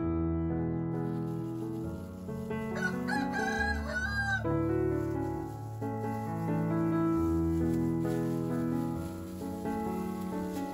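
A rooster crows once, about three seconds in, over soft piano background music.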